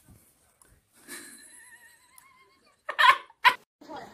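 Small puppy vocalizing: a thin, wavering whine, then two short, loud sounds in quick succession near the end.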